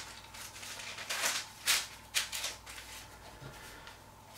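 Thin Bible pages being turned by hand, a few crisp rustles of paper between about one and two and a half seconds in.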